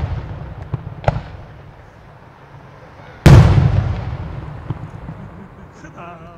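Aerial firework bursts: a loud boom about three seconds in that rolls away in a long echoing fade, with a sharper crack about a second in and the dying tail of an earlier boom at the start.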